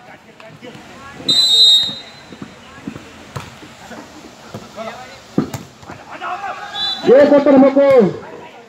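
A referee's whistle gives one loud, steady blast about a second in, then a volleyball is struck sharply twice during the rally. A loud, long shout from a voice comes near the end.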